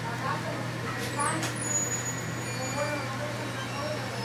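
Indistinct voices talking in the background over a steady low hum, with a couple of sharp clicks about a second in.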